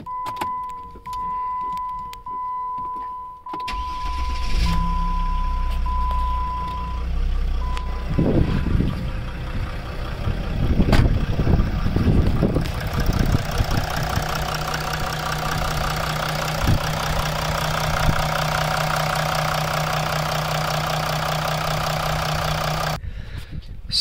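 A dashboard chime beeps, then the 2008 Jeep Grand Cherokee's OM642 3.0 L Mercedes diesel V6 cranks briefly and starts about three and a half seconds in, then idles steadily. It starts promptly and runs smoothly on freshly replaced injectors, the fix for leaking injectors that had caused a minute-long crank. A few louder gusts of noise come through around ten to twelve seconds in.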